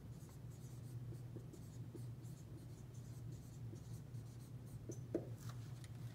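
Dry-erase marker writing on a whiteboard: a run of faint marker strokes over a steady low hum, with a brief rising tone about five seconds in.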